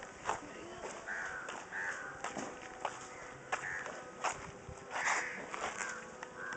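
Birds calling: about five short calls spread across a few seconds, with several sharp clicks in between.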